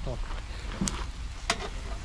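Chicken on metal skewers sizzling over hot charcoal in a mangal grill, with two sharp clicks about a second and a second and a half in as the skewers are turned.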